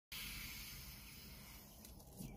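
Faint, long sniff through the nose as a wrapped breakfast sandwich is held up to the face and smelled, fading away over the first second or so.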